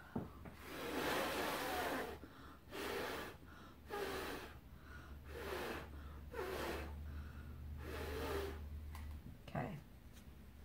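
A person blowing air hard through the lips, straight down onto wet acrylic paint, in about six blows with short pauses for breath, the first the longest; the blowing pushes the paint rings outward into a bloom.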